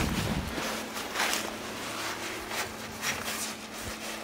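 Soft shuffling and rustling of a person moving on dry grass and handling a pony cart's wheel: a handful of faint scuffs spread over a few seconds, after a low rumble in the first half second.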